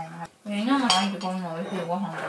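Dishes and chopsticks clinking at a dinner table, with one sharp clink about a second in, under people talking.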